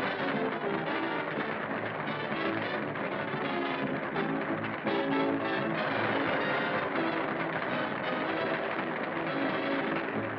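Dance music for a hula with plucked strings, on an early-1930s film soundtrack with a dull, muffled top end. It gets louder about five seconds in.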